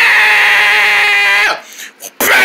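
A person's voice holding one long, steady, high-pitched scream that cuts off suddenly about a second and a half in.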